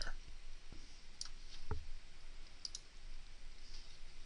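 Several sharp computer mouse clicks, spaced irregularly a second or so apart, over faint steady hiss.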